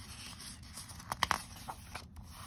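A picture book's paper page being turned and pressed flat by hand: a soft rustle with a few sharper crinkles a little past the middle.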